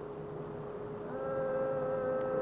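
A faint steady hum through the sound system. About a second in, a man's voice joins it with one long, level sung note, the drawn-out chant that majlis recitation slips into.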